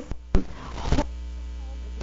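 Steady electrical mains hum in a pause between words, with a short click about a third of a second in and a soft rush of noise about a second in.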